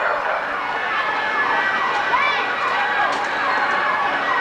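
A siren-like wail that falls in pitch over and over, about twice a second, with voices beneath it.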